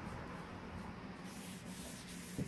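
Cloth rubbing over a sanded black walnut board as finish is wiped on by hand: a soft, steady rubbing that picks up about a second in.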